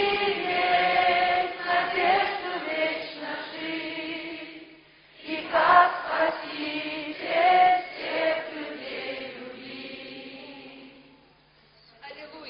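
A choir singing the closing phrases of a Christian hymn in long held notes, in two phrases with a short break about five seconds in, the last one fading out near the end.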